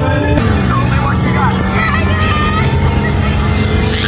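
Radiator Springs Racers ride vehicle running at speed: a steady low rumble of motor and wind, with voices and music over it.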